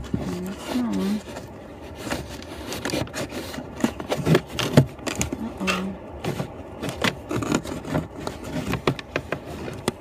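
Irregular plastic scraping, rubbing and clicking as a cabin air filter is worked into its housing behind the glove box.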